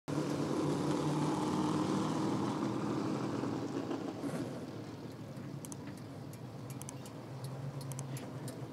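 Engines of a field of vintage stock cars running at low, steady speed on pace laps, their sound fading after about four seconds as the cars pull away. A few faint clicks come in the second half.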